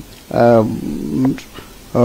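A man's voice hesitating mid-sentence: one short syllable, then a low, drawn-out hesitation hum lasting about a second.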